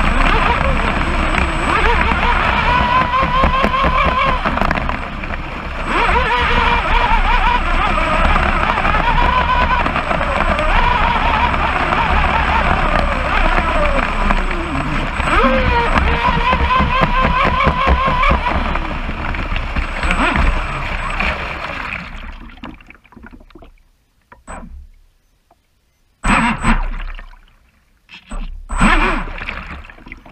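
Pro Boat Blackjack 29 RC catamaran heard onboard at full throttle: a loud rush of water against the hull with a motor whine that wavers in pitch. About 22 seconds in the sound fades as the boat slows, goes almost quiet for a couple of seconds, then comes back as short bursts of splashing and gurgling as the hull settles in the water.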